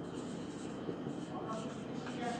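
Faint sound of a marker pen writing a word on a whiteboard.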